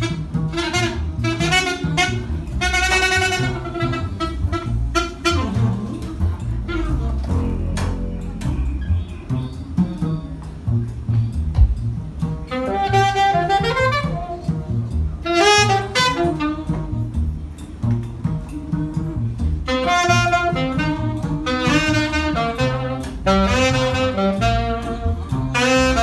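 Jazz duo of alto saxophone and upright double bass playing live. The bass runs under everything, and the saxophone comes in short, busy runs of notes in the first few seconds, again in the middle, and densely through the last third, with a sparser stretch about a quarter of the way in.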